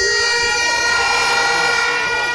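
A horn held down on one steady, unbroken note over a noisy street crowd.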